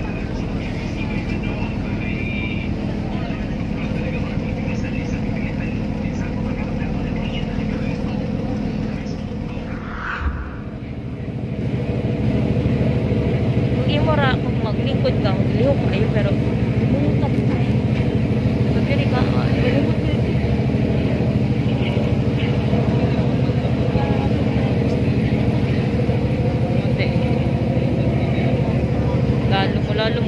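Steady drone of a passenger boat's engine, heard first from inside the cabin. After a cut about ten seconds in it comes back louder and fuller, heard by the open rail with the sea rushing past the hull.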